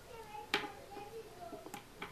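Plastic knitting needles clicking while stitches are worked: one sharp click about half a second in and a fainter one near the end, over quiet room tone.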